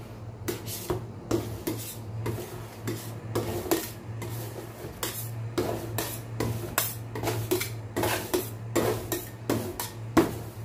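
Metal spatulas chopping and scraping a freezing smoothie ice cream base on a stainless steel cold plate: irregular rasping scrapes and taps of steel on steel, about two a second. A steady low hum runs underneath.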